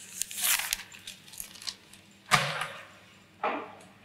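Rustling and light clinking of a leather jacket being searched by hand, then a sharp thump a little past two seconds in and a softer knock near the end, as something is pulled out and put down.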